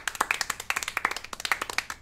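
Several people clapping their hands: a quick, uneven run of claps that stops abruptly at the end.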